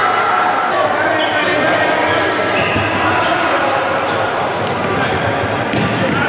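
Young futsal players shouting in a reverberant sports hall, with the ball kicked and bouncing on the wooden court a couple of times.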